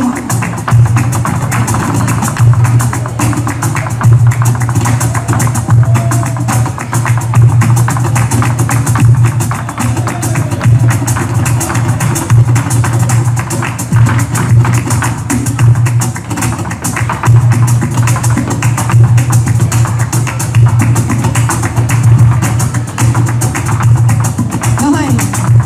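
Live flamenco music with Spanish guitar, driven by a dense run of sharp percussive strikes that never stops.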